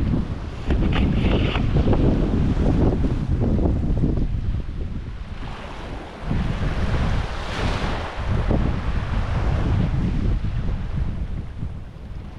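Wind buffeting the microphone in uneven gusts, with small waves washing over rocks at the shore; a louder hiss of wash swells about two-thirds of the way through.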